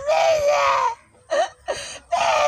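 A boy's long high wail, held for about a second and sagging slightly in pitch, followed by two short cries.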